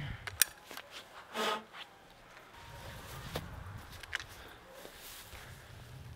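Sharp metallic clicks from handling a single-barrel break-action 12-gauge shotgun as it is readied. The loudest click comes about half a second in, and two fainter ones follow around three and four seconds. A brief pitched sound comes in between, about a second and a half in.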